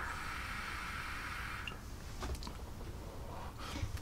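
A draw on a mechanical mod with a dripping atomizer (RDA): the hiss of air pulled through the restricted airflow lasts about a second and a half and then fades, followed by faint breaths.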